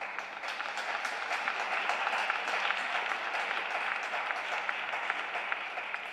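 Audience applauding at the end of an ice dance free dance, with individual claps audible; it builds over the first couple of seconds and eases off near the end.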